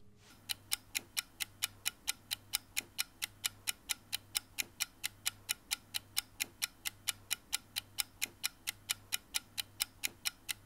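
A clock ticking steadily, about four sharp ticks a second, starting about half a second in.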